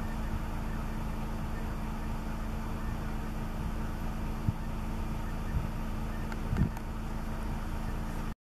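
Car engine idling: a steady low hum and rumble, with a few soft thumps in the second half.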